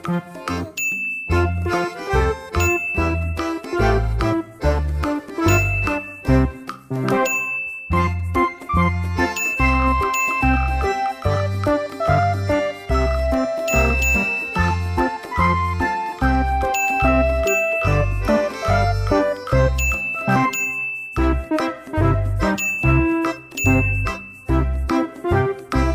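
Upbeat background music: bell-like chiming notes over a steady, evenly pulsing bass beat.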